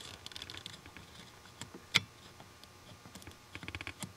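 Faint small clicks and taps as a test light's probe is worked against fuse block terminals, with one sharper click about two seconds in and a quick run of little ticks near the end.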